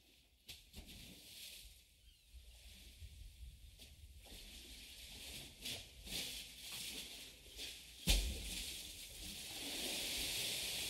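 Outdoor ambience sound effect fading in: a steady hiss over a low rumble, with scattered rustles and clicks, slowly growing louder, and a sudden thump about eight seconds in.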